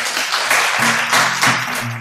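Audience applauding, with acoustic guitar music fading in under it about halfway through.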